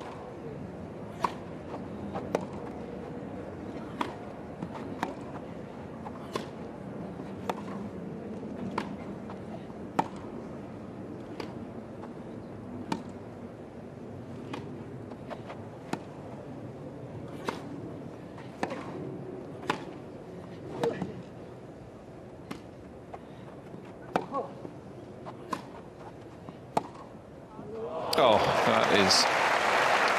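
A long tennis rally on a grass court: a sharp pop of racket on ball about every second and a half, over a low crowd murmur. Near the end the crowd breaks into loud applause as the point is won.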